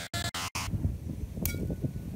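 Choppy, stuttering music cuts off just under a second in and gives way to wind buffeting the phone's microphone. About a second and a half in comes a single sharp strike with a brief ringing tone: a baseball bat hitting something.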